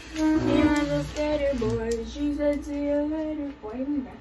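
A high female voice sings a short line, holding notes of about a second each and sliding between them, then stops abruptly.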